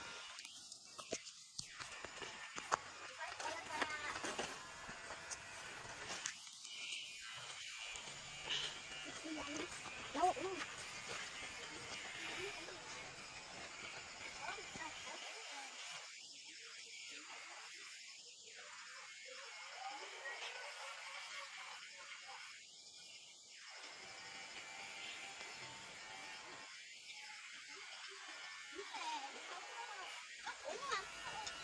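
Faint, indistinct voices with soft background music over a low hiss.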